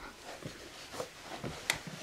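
Faint rustling and soft knocks from handling a handheld camera as the person sits down, with one sharp click near the end.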